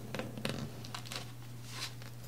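Knife cutting down through a glazed Tula gingerbread held with a fork: a run of dry crackling crunches and scrapes as the blade breaks the crust and glaze, the strongest about half a second in. A steady low hum runs underneath.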